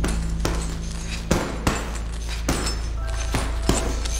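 Boxing gloves punching a tape-wrapped heavy bag, about six hits at an uneven pace, over a low steady drone.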